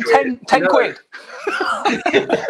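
Men chuckling and laughing, mixed with speech, with a short pause about halfway through.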